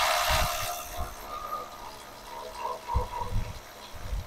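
A power tool working on a 13 mm bolt at the subframe mount, heard as a loud hiss that fades away over about three seconds, with a few low knocks.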